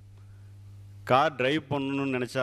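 A man talking into a handheld microphone: a brief pause with only a steady low hum, then his voice resumes about a second in.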